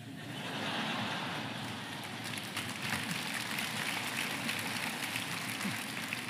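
Audience applauding, a steady crackle of many hands clapping that swells in over the first second.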